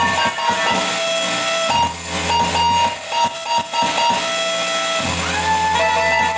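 Free-improvised electronic noise music with a reed instrument: held steady tones over a dense, noisy texture, with a low drone that cuts in and out.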